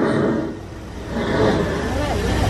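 Mine train roller coaster rumbling along its track, the sound dipping briefly and then growing louder after about a second.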